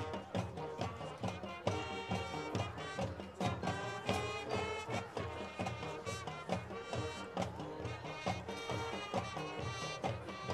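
High school marching band playing, brass with sousaphones over a steady marching-drum beat.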